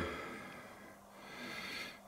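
Quiet room tone with a faint breath through the nose, swelling slightly near the end.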